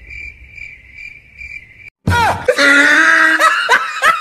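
Cricket chirping sound effect, a steady high trill, for about two seconds; it stops abruptly and a loud comic sound effect takes over, its pitch sliding down several times and then holding.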